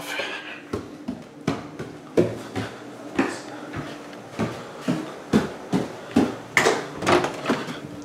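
Footsteps climbing a flight of stairs with painted treads: a dull knock with each step, about two steps a second.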